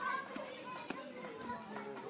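Children playing and calling out, with other voices around them and a few light knocks.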